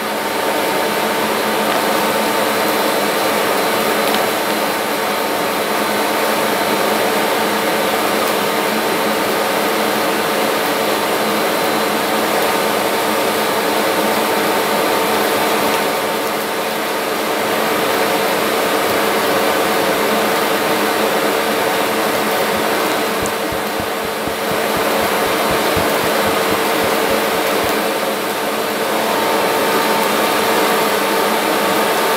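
Vacuum cleaner running steadily with a constant motor whine, dipping slightly in level a couple of times.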